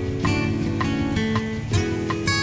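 Background music on a plucked string instrument, with guitar-like notes picked and strummed about four or five times a second.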